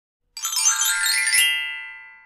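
A sparkling chime flourish for a channel logo: a glittering run of bell-like tones starts about a third of a second in, climbs for about a second, then rings on and fades away.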